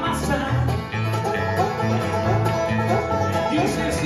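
Live bluegrass band playing an instrumental passage: banjo and acoustic guitar over electric bass notes on a steady beat.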